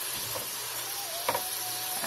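Spinach sizzling steadily in a hot frying pan as a spatula stirs it, with a couple of short clicks of the spatula against the pan.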